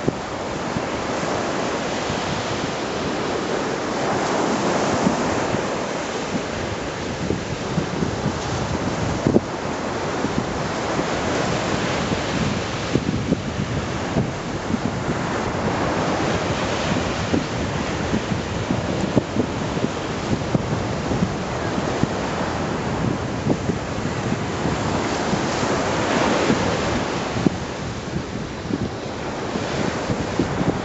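Choppy surf washing and breaking against a jetty and shore, swelling louder every several seconds, with wind buffeting the microphone.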